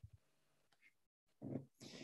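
Near silence on a video call, then in the last half second a faint short throat sound and an intake of breath from the man about to speak.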